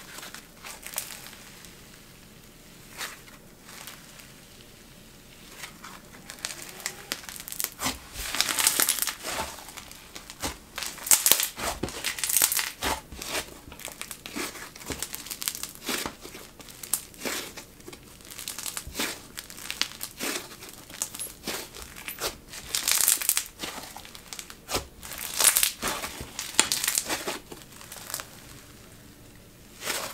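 Snow fizz slime being stretched, folded and squeezed by hand, giving irregular crackling and popping. A few scattered pops at first, then busy crackling through most of the clip, easing off near the end.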